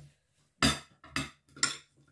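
A metal fork scraping and clinking against a ceramic bowl and plate three times, as salad is pushed out of the bowl onto the plate.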